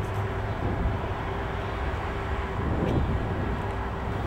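Steady outdoor background noise: a low rumble with a faint steady hum, and no distinct events.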